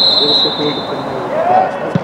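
Referee's whistle blown once: a shrill steady blast lasting about a second and fading, signalling a set piece. Voices run underneath, and there is a dull thump near the end.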